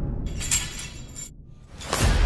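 A cinematic sound-design hit: a deep rumbling boom with a bright, glassy shatter-like crash about half a second in that dies away, then music swells in near the end.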